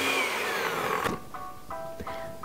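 Countertop blender motor running on a mash of avocado, lemon and egg white, then switched off: its whine falls in pitch as it winds down, and it stops about a second in. Light background music with plucked notes follows.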